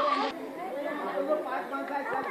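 A nearby voice breaks off just after the start, followed by a background murmur of several people talking at once, with no clear words.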